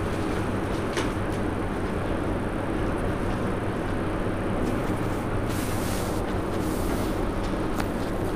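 Steady background noise with a low, even hum throughout, without speech.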